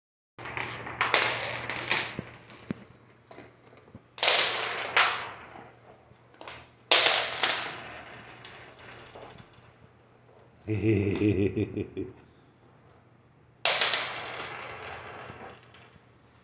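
Glass marbles clattering and rattling in a small plastic box, in four separate bursts that each die away over a second or so. A short vocal sound from a person comes in between the third and fourth bursts.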